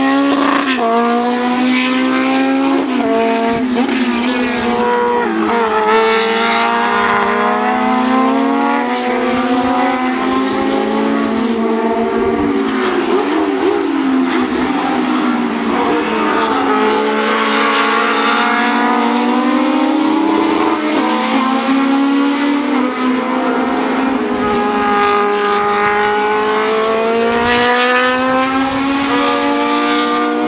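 Historic Formula 2 single-seater racing cars running at high revs as they pass. The engine notes climb and drop back again and again through gear changes and lifts for the corners.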